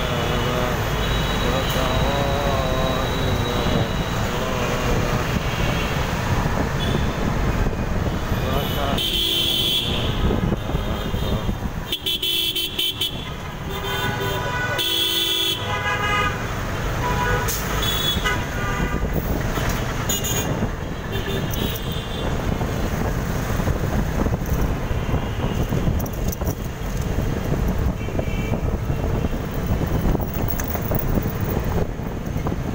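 Dense city road traffic heard from a vehicle moving in it: engines and tyres running steadily, with vehicle horns honking repeatedly, the loudest blasts about nine, twelve and fifteen seconds in.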